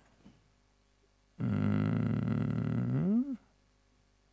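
A man's drawn-out, wordless low "uhhh" of about two seconds, starting about a second and a half in, held on one pitch and then rising sharply just before it stops.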